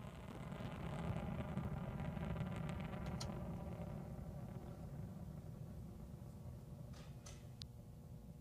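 Delta II rocket's engines, with its four solid rocket motors, heard in flight as a low rumble with crackle. The rumble swells about a second in, then slowly fades as the rocket climbs away, with a few sharp clicks near the end.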